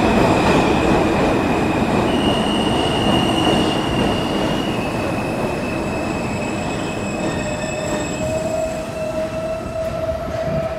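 New York City subway train of R160A cars pulling into a station and slowing: a rumbling roll with a high, steady squeal that shifts in pitch a couple of times. Near the end, as the train comes almost to a stop, a lower whine comes in.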